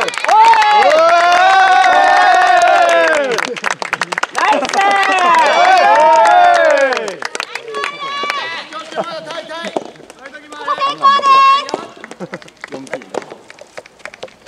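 Loud drawn-out cheering shouts from a group of voices, two long chants in the first half with hand clapping, then shorter, quieter calls that die away about two seconds before the end.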